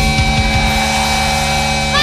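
Live rock band of electric guitar, bass and drums: a few drum hits, then the guitars and bass hold a ringing chord between sung lines.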